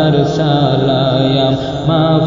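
Bengali devotional gojol music: held, slowly wavering chanted vocal notes over steady sustained accompaniment, with a brief drop in level near the end.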